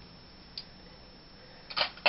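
Quiet room tone with a faint tick about half a second in, then a short, loud hiss near the end.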